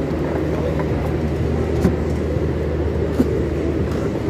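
Go-kart engine running with a steady low hum, a few light knocks and clicks on top.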